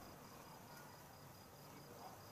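Near silence with a single cricket chirping faintly: a high, evenly pulsed chirp that keeps a steady rhythm.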